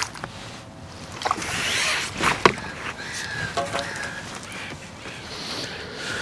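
Water splashing as a hooked goldfish is drawn across the surface and into a landing net, with a few sharp clicks from the tackle.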